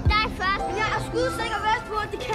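Children shouting and yelling over film score music with steady held tones.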